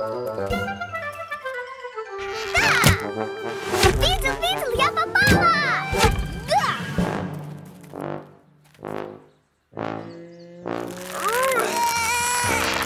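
Cartoon soundtrack: a short descending run of musical notes, then a few sharp thuds as arrows strike a wooden archery target, mixed with the characters' wordless excited cries. Near the end there is a held tone and more wordless cries.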